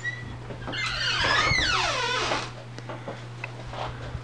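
A drawn-out squeak, rising and then falling in pitch for about a second and a half, over a steady low hum.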